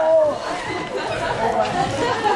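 Several people talking at once: indistinct, overlapping chatter.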